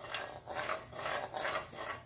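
Crankshaft and connecting rods being worked by hand in the aluminum half-case of a VW flat-four engine, checking that the crank rotates freely in its new main bearings: a run of short metal rubbing and scraping sounds, several a second.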